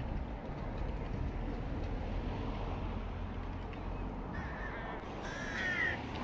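A gull calling near the end: a short faint call, then a louder one whose pitch bends, over steady low outdoor background noise.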